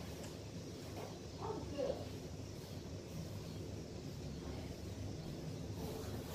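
Quiet room tone with a steady low hum. About a second and a half in comes a brief, faint vocal sound, a murmur or 'mm'.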